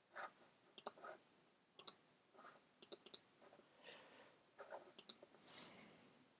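Faint computer mouse clicks, several coming in quick pairs, with softer brushing sounds in between.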